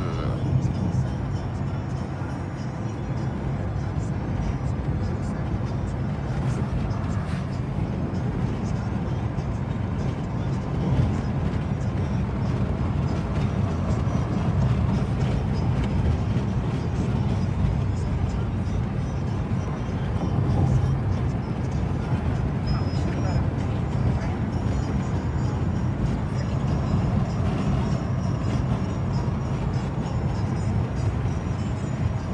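Steady road and engine noise inside a moving car's cabin, with the car radio playing music and voices over it.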